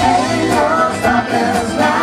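Live band music: electric guitar, electric bass and keyboard playing together, with a wavering melody line held over the band.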